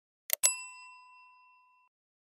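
Subscribe-animation sound effect: a mouse click, then a single bright bell-like notification ding that rings out and fades over about a second and a half.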